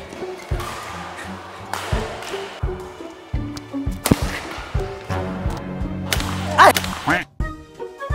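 Badminton rackets striking a shuttlecock in a fast rally: a string of sharp hits under a second apart, over background music with a steady bass line. A player shouts near the end.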